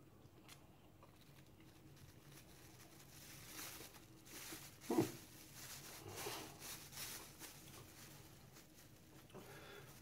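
Faint crinkling and rustling of a small plastic bag of dried herbs, handled and shaken over a plate, loudest in the middle. About halfway through there is one brief louder sound that falls in pitch.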